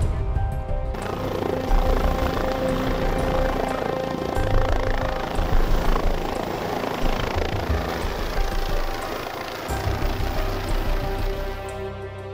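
Background music over the steady running noise of a medical helicopter with its rotor turning.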